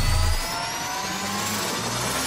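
Electronic riser sound effect: several tones slowly gliding upward over a hiss, with a deep rumble that cuts off about half a second in.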